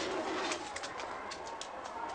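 Doves cooing over a steady background of shuffling and short clicks.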